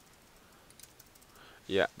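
A few faint, scattered clicks of a computer keyboard and mouse, followed by a spoken "yeah" near the end.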